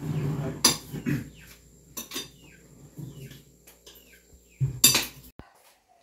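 Spoons and forks clinking and scraping on plates and a cooking pot during a meal, in scattered sharp clinks, the loudest about five seconds in.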